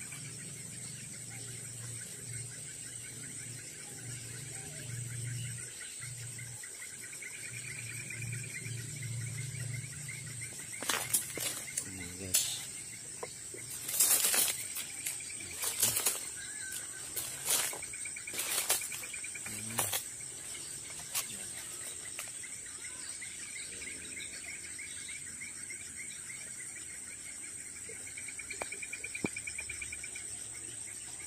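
Forest insects: a steady high-pitched whine and pulsing, cricket-like trills throughout. In the middle come a series of rustles and footsteps through leaf litter and undergrowth, and near the end a fast ticking.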